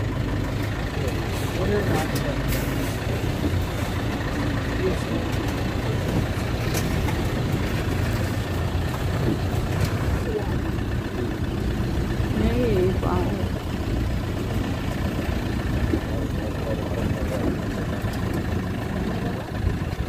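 Safari bus engine running steadily with a low rumble, heard from inside the bus cabin, with passengers' voices now and then.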